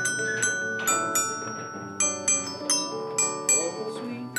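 Small glockenspiel struck with mallets, playing a melody of single ringing metallic notes, about two to three a second.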